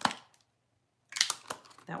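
Packaged wax bars being handled on a table: a sharp click, a short pause, then a brief burst of rustling and clicking about a second in.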